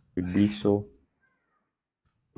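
A man's voice speaking a couple of drawn-out syllables in the first second, then silence.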